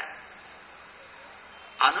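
A pause in a man's speech, filled by a steady high-pitched background hiss. His voice resumes near the end.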